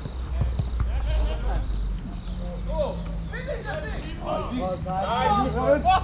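Players shouting and calling to each other during a football game, the shouts growing busier and louder from about halfway through, with a few dull knocks in the first second.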